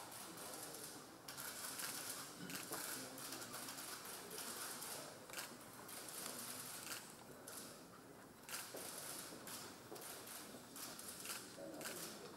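Faint meeting-room ambience: low murmured conversation with scattered light rustling and clicks.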